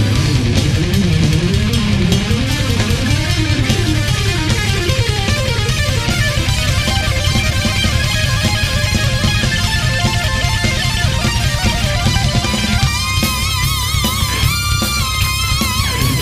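Progressive metal band playing an instrumental passage live, with electric guitar over bass and drums. A line runs up and down in pitch through the first half, and a high wavering lead line comes in near the end.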